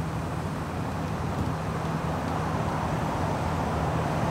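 A vehicle engine idling: a steady, even low drone.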